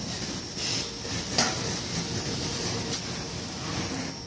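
Automated linear TIG welding machine running, its torch travelling along a tank seam under an arc: a steady, even hiss and hum. One sharp click comes about a second and a half in.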